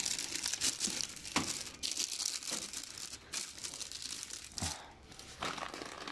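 Clear plastic wrap crinkling as a film-wrapped stereo unit is handled and turned around on a metal shelf, with a dull knock about three-quarters of the way through.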